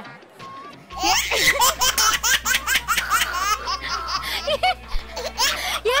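Loud, high-pitched laughter in rapid repeated bursts, starting about a second in, over background music.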